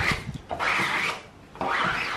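A squeegee scraping photo emulsion across the mesh of a screen-printing frame, spreading it into a thin coat. Two rasping strokes: one about half a second in lasting roughly half a second, and another beginning near the end.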